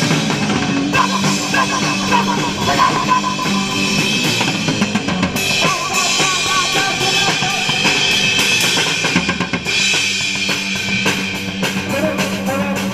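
Rock band playing live, the drum kit loud and close with bass drum, snare and cymbals, over electric guitar. The drum strikes come quick and dense near the end.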